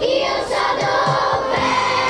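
Music with a choir singing sustained notes.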